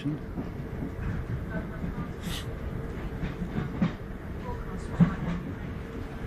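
Running noise of a train heard from inside the passenger carriage: a steady low rumble with scattered clicks and knocks from the wheels on the rails, and one sharper knock about five seconds in.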